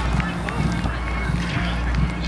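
Distant shouts and chatter of people playing bubble soccer, over a steady low hum.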